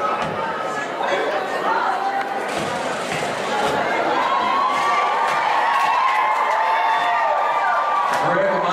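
Crowd of spectators in a stadium stand, many voices talking and calling out at once, with a few knocks.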